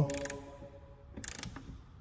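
Hand ratchet clicking briefly a little over a second in, turning a Torx bit on a Jeep Gladiator rear door hinge bolt to back it out.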